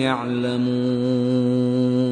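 Male Quran reciter chanting in Arabic, holding one long note on a steady pitch: the drawn-out close of a verse.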